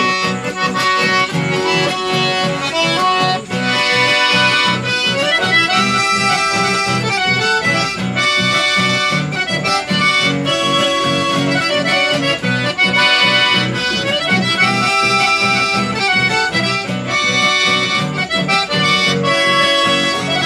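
Two-row button accordion playing a lively folk tune with a small ensemble, sustained reedy chords and melody over a steady rhythmic accompaniment in the bass.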